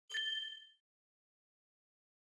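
A single bright chime sound effect marking the logo reveal: one struck note with several ringing tones that fades away within about a second.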